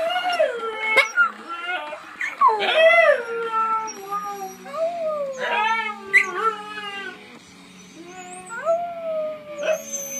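Young Siberian husky howling: a string of drawn-out howls, each rising and then sliding down in pitch, with a brief lull about three-quarters of the way through.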